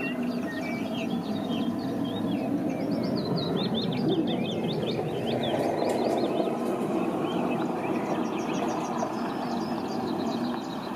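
Small songbirds chirping and singing in many quick, high notes throughout, over a steady background noise.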